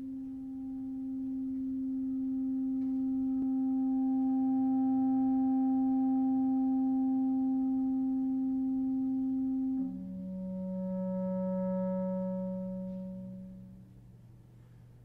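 Solo clarinet holding a long, soft note that swells louder and then eases back. About ten seconds in, it steps down to a lower held note that swells and fades away.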